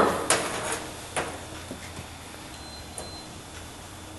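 A few light clicks and taps of glassware being handled during a drop-by-drop titration, the sharpest about a second in, over a faint steady hum.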